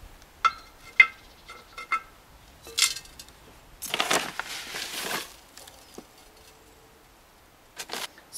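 A few sharp clinks with a brief ring as the terracotta pot is handled, then water poured onto the potted compost for about a second and a half, watering the newly planted bulbs in.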